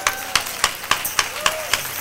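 Hands clapping in a steady rhythm, about three to four claps a second, with faint voices underneath.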